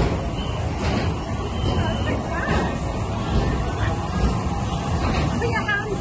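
Amusement-park ambience: a steady low rumble with voices in the background.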